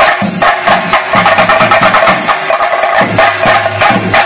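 An ensemble of chenda drums beaten with sticks, playing a fast, loud, continuous rhythm as accompaniment to a theyyam dance.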